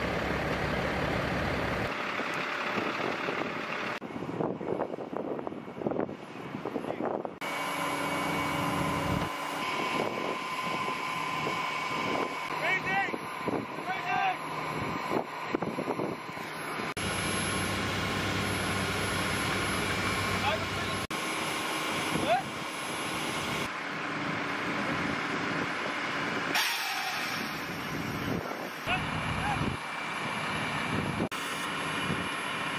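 Field sound of heavy military vehicles and equipment running steadily, with faint, indistinct voices. The sound changes abruptly several times, where shots are cut together.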